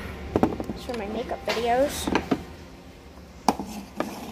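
Two sharp knocks, one just after the start and one near the end, like handling noise close to a phone's microphone. In between, a wordless voice glides up and down in pitch.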